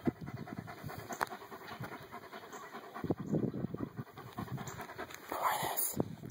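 A large dog panting rapidly with its mouth open, in a steady run of short breaths that grows a little stronger about halfway through.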